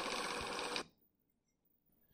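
Small motor-driven wheeled cart running along a model-train track, a steady whir of motor and wheels on the rails that cuts off abruptly just under a second in.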